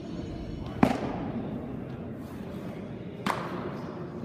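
A pitched baseball smacking into a catcher's mitt with a sharp pop about a second in, then a second, fainter pop a couple of seconds later.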